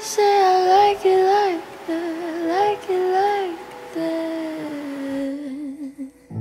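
A woman's voice singing a slow wordless melody in short phrases, then holding one long note that sinks slightly and wavers before it stops.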